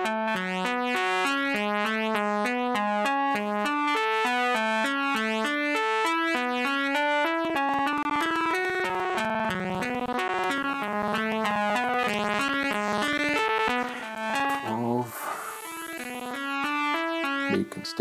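Software synthesizer arpeggio, a fast run of notes stepping up and down in a repeating pattern at a steady level. It thins out and gets quieter a little before the end.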